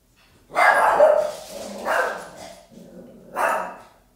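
A dog barking loudly in three bursts, the first and longest starting about half a second in and the last near the end.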